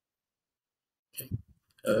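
Silence, then a little over a second in a man's brief throaty vocal noise, two short pulses, before he says 'okay'.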